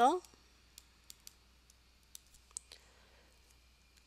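A handful of faint, irregularly spaced clicks from a stylus tapping on a writing tablet as a word is handwritten on screen.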